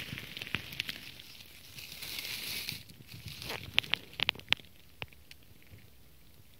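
Dry fallen leaves and twigs rustling and crackling as they are disturbed, with a quick run of sharp snaps about three and a half to four and a half seconds in.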